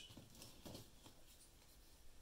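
Near silence, with a few faint, soft handling sounds in the first second as small plastic XT90 battery connectors are picked up.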